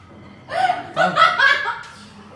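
A person laughing: a short burst of giggling that starts about half a second in and lasts just over a second.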